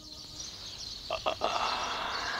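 Frogs croaking in a night-time outdoor ambience: two short croaks a little after a second in, then a longer one, over a steady high background hiss.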